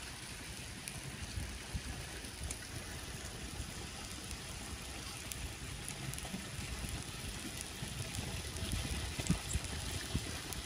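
Faint, steady sizzling and bubbling of freshwater clams (dẹm) cooking in their shells with scallion oil on a charcoal grill, with a few light clicks.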